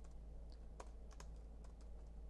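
Computer keyboard typing: a handful of faint, irregularly spaced keystrokes.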